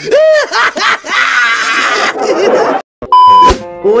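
Comic meme sound effects between jokes: a wobbling, voice-like sound, then a noisy stretch of laughter that cuts off suddenly, followed by a loud, short, steady beep like a censor bleep about three seconds in.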